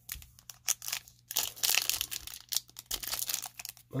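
Foil wrapper of a 2019 Topps Chrome Update baseball card pack being torn open and crinkled by hand: a run of rapid crackles and tearing that gets louder about a second and a half in. The pack opens up a little funny, tearing unevenly.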